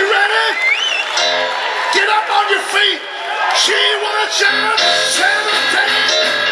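Live rock and roll band playing, with a male lead singer's voice over it in short notes that bend in pitch, sliding up at the start.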